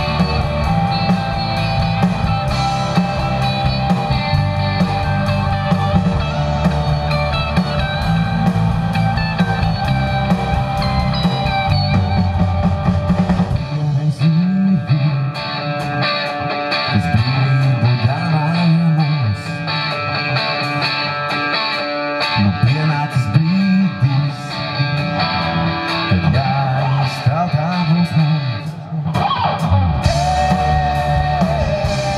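A rock band playing live through an outdoor PA in an instrumental passage led by electric guitars, with keyboards and drums. About halfway through, the heavy low end drops away and the band plays more sparsely.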